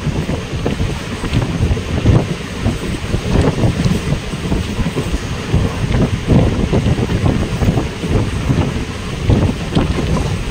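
Wind buffeting the microphone at the open door of a moving passenger train, in uneven gusts, over the low rumble of the coach running along the track.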